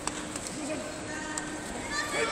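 Indistinct voices in a large sports hall, with a couple of sharp taps, one at the start and one about a second and a half in.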